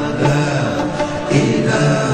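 Devotional vocal chanting: voices singing long held notes that glide from one pitch to the next.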